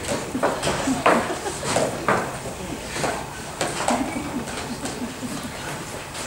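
A few sharp knocks and clatters of storage containers being taken out of a bag and set on a table, with low murmuring voices underneath.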